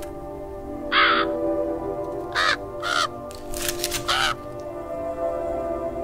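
A crow cawing about four times, in short harsh calls, over steady background music.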